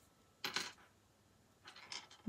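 A brief clatter of a small hard plastic object on a wooden desk about half a second in: a pick tool for placing rhinestones being picked up and handled, with a faint rustle near the end.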